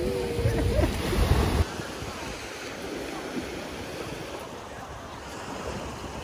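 Small waves washing onto a sandy beach, with wind rumbling on the microphone for the first second and a half until it cuts off abruptly; after that the surf wash is steady and quieter.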